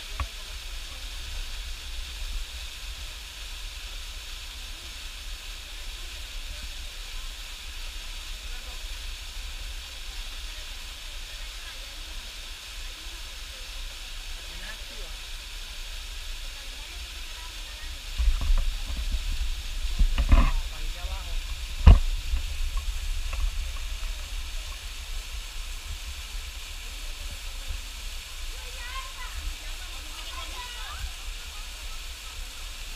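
Small waterfall splashing into a rock pool, a steady hiss of falling water. A few low bumps come about eighteen to twenty-one seconds in, then a single sharp knock.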